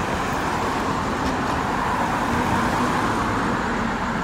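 Steady road traffic noise from cars driving past on the street, mostly the hiss of tyres on the road.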